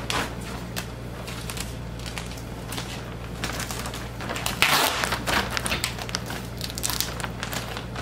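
Thick plastic sheeting crinkling and rustling as it is handled and tape is pressed down along a seam over it, with irregular small crackles and a louder rustle a little before the midpoint.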